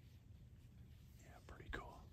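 Near silence with a faint low rumble, broken near the end by a brief, quiet whisper from a person.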